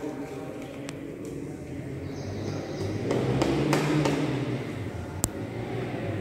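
Quiet room tone with faint rustling of a folded paper sheet and a plastic zip pouch as powder is tipped slowly into the pouch, with a single sharp click about five seconds in.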